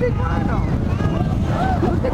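Wind buffeting the microphone as a steady low rumble, with distant voices chattering in the background.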